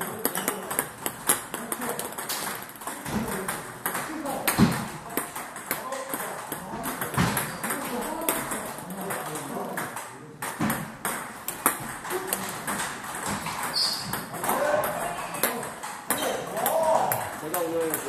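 Table tennis balls striking rackets and bouncing on tables: a steady run of quick, irregular clicks from several tables at once.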